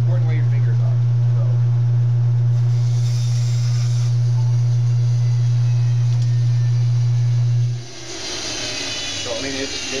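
Benchtop bandsaw running with a loud, steady motor hum while its blade cuts through a length of PVC pipe. The hum cuts off suddenly about eight seconds in.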